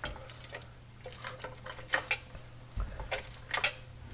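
Scattered light metallic clicks and clinks, with one duller knock about three seconds in, as a Ford 9-inch rear axle housing is tilted on its supports to raise the pinion angle. A low steady hum runs underneath.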